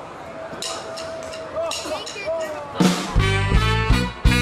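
A live rock-blues band starting a song: a held note that bends a couple of times and a few sharp hits, then about three seconds in the full band comes in loudly, with drums, bass, electric guitar and a horn section of saxophone, trumpet and trombone playing a rhythmic, swing-like figure.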